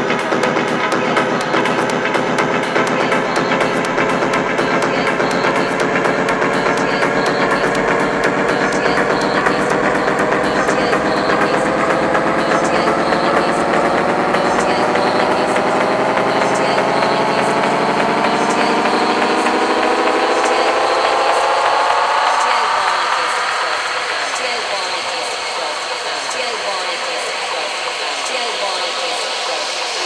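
Techno breakdown: a dense synth riser whose pitch slowly climbs throughout, under fast ticking hi-hats. The bass falls away about twenty seconds in and the riser thins out.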